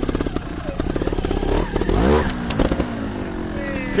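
Trials motorcycle engine idling with even, rapid firing pulses, then given a sharp blip of throttle about two seconds in, its pitch falling away slowly afterwards.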